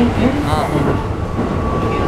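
Running noise of a Keikyu New 1000 series electric train heard from inside the car: a steady low rumble of wheels and bogies on the rails, with a thin, steady high whine coming in about halfway through.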